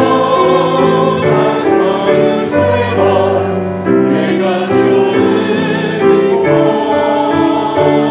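A congregation and choir singing a hymn together with instrumental accompaniment, in held notes that change about every second.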